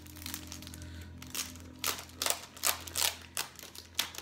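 Plastic outer sleeve of an LP crinkling and rustling as the record is handled and turned over, in a run of short crinkles during the second half.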